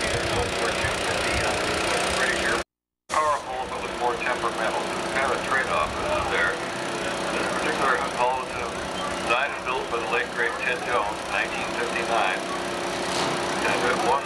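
A steady engine drone with indistinct background voices over it. The sound cuts out completely for about half a second about three seconds in.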